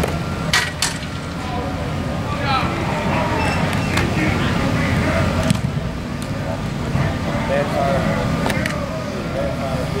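Open-air ambience of a football practice: distant, indistinct voices of players and coaches over a steady low rumble, with two sharp clicks less than a second in.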